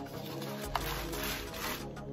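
Background music, with a short crinkling rustle of a clear plastic bag being pulled out of a cardboard box. The rustle starts with a sharp click a little under a second in.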